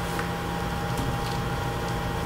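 Room tone: a steady fan-like hum and hiss with a faint high tone held throughout, as from ventilation or projector cooling.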